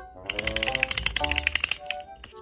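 Background music with a rapid run of typing-style clicks, about a dozen a second, lasting about a second and a half: a typing sound effect as an on-screen caption appears.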